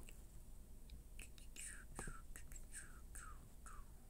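Faint whispering: a man muttering under his breath in a few short breathy phrases, with a couple of faint computer-mouse clicks.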